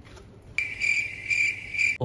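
A cricket chirping: a steady, high, pulsing trill that starts abruptly about half a second in.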